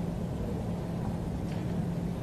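Steady low room hum with one constant low tone, between spoken phrases.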